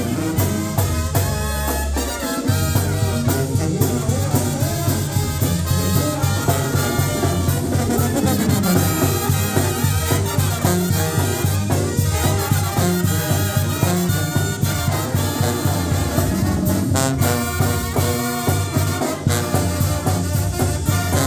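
Live Mexican brass banda (banda sinaloense) playing an instrumental passage: trumpets, alto horns and clarinets carry the melody over a sousaphone bass line and a steady beat of bass drum and cymbals.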